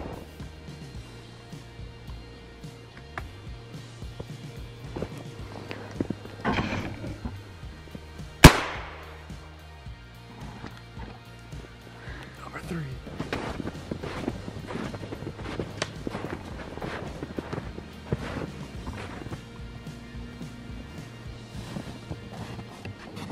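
A .410 shotgun fired once, about eight seconds in: a single sharp report with a short ringing tail, far louder than anything else, over steady background music.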